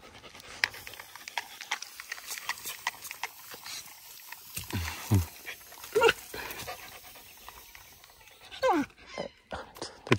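A puppy panting and moving about, with light clicks and a few short falling voiced sounds in the second half.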